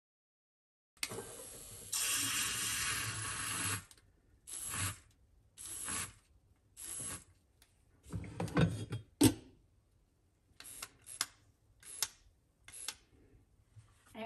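Coffee being poured from a drip-machine carafe into a mug for about three seconds. Then a string of short whirs and knocks follows as a handheld milk frother is run in brief pulses in the creamer and the glass carafe is handled, with a sharp knock near the middle.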